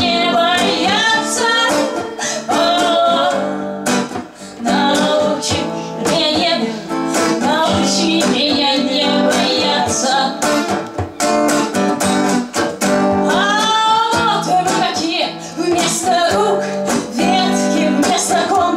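Live acoustic song: a woman singing over a strummed acoustic-electric guitar, with a hand drum played alongside.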